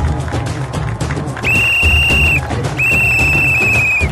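A referee's whistle blown in two long, high blasts with a slight warble, the first about a second and a half in and the second starting just under three seconds in, over background music with a steady beat. The blasts mark the end of a kabaddi raid with a tackle, as a point is awarded.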